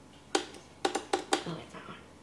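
A quick run of about five sharp plastic clicks from the controls of a high-powered kitchen blender being set before it is switched on; the motor is not yet running.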